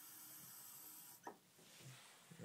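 Faint hiss of a bathroom tap running into a small metal goblet, shut off a little over a second in.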